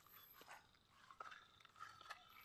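Near silence: faint outdoor ambience with a few soft, scattered ticks.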